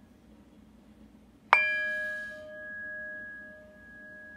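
A metal singing bowl struck once about a second and a half in, ringing on with a wavering tone of several pitches that slowly fades.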